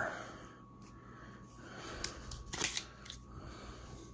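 Trading cards and a rigid plastic card holder handled in the hands, with soft rustles and a brief plastic clatter about two and a half seconds in.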